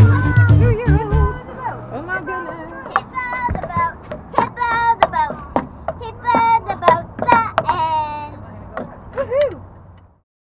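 Background music with a steady beat that stops about a second and a half in, followed by a young child's high-pitched, wavering voice over sharp taps of drumsticks on a drum pad.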